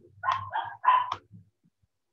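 A dog barking three times in quick succession, short high-pitched barks.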